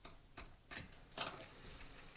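Light metallic clicks and clinks from a steel tap splitter tool being handled on a basin tap: a ringing clink about two-thirds of a second in, another click just after a second, and faint ticks between.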